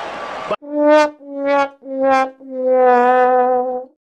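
Sad trombone gag sound effect: three short brass notes stepping down in pitch, then a long held fourth note, the comic 'wah wah wah waaah' of failure. About half a second in, arena fight-broadcast noise cuts off suddenly just before it.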